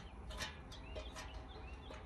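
Faint bird chirps: several short calls over low background noise, with one soft click about half a second in.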